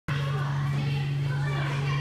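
Young children's voices and chatter in a large room, over a loud, steady low hum.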